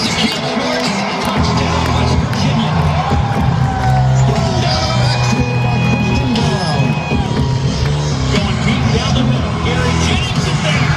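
Music playing over a football stadium's loudspeakers, steady and loud, with a large crowd's voices mixed in.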